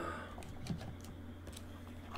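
A few scattered, faint keystrokes on a computer keyboard, over a low steady hum.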